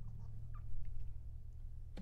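Quiet room tone: a low steady hum with a few faint small sounds, then a sharp click at the very end as video playback is resumed.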